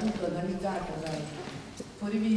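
A woman speaking into a microphone.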